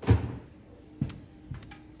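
Three knocks: a loud thump near the start, a sharper knock about a second in and a fainter one half a second later.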